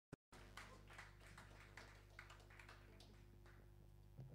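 Near silence on a live stage recording: a steady low electrical hum, a brief click at the very start, and faint sparse taps about twice a second that die away.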